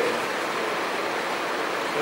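Steady hiss of background room noise, even and unchanging, with nothing else standing out.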